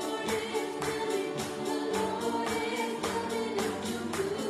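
Live worship song: a woman singing lead into a microphone over upright piano and a steady beat on an electronic drum kit.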